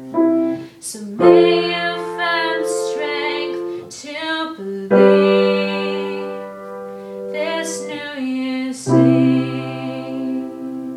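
A girl singing while accompanying herself on a grand piano. Held piano chords change every few seconds under a slow, sustained vocal line with a slight waver.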